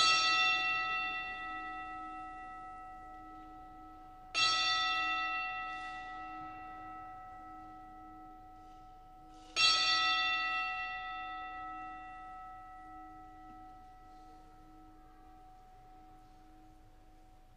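An altar bell struck three times, a few seconds apart, at the elevation of the host during the consecration. Each strike rings out slowly as a clear, long-lasting chime with several tones.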